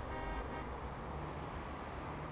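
Steady, low outdoor city background noise with a traffic-like rumble. A faint ringing tail fades out in the first half-second.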